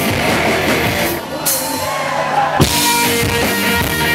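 Live rock band with drums, electric guitar, trombone and a shouted vocal playing loud. The band thins out a little after a second in, then a sharp drum hit about two and a half seconds in brings the full band back with held horn notes.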